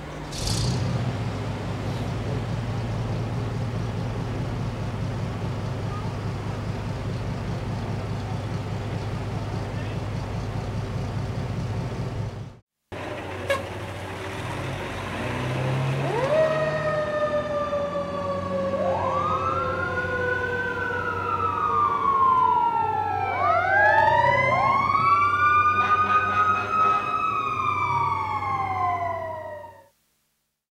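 Fire apparatus diesel engine running with a steady low rumble. After a short break, fire apparatus pull out with several sirens wailing at once, their rising and falling pitches overlapping and getting louder toward the end.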